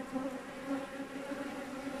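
Honeybees buzzing around an open hive: a steady hum from many bees in flight.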